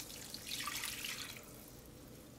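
Chicken broth poured slowly from a glass measuring cup into a hot skillet of vegetables and flour roux: a faint pouring and splashing of liquid, fuller from about half a second in and easing off after about a second and a half.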